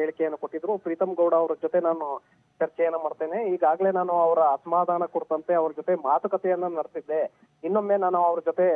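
Speech only: a man speaking in Kannada over a telephone line, his voice thin and narrow.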